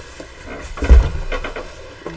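A bolt of wide-back quilting fabric thumps down onto a table about a second in, followed briefly by the rustle of the fabric being flipped open.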